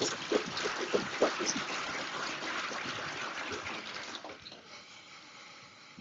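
Rustling, rubbing handling noise from a handheld microphone being carried through the room, with a few soft knocks. It fades out after about four seconds.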